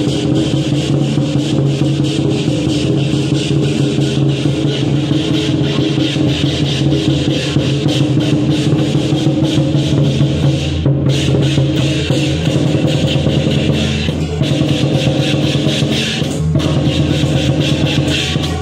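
Chinese lion dance percussion music: a drum with rapid, dense cymbal clashes and sustained ringing tones, played continuously at a steady loud level.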